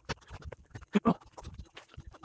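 Dry leaf litter crackling under quick movement through the forest floor, with two short grunt-like vocal sounds about a second in.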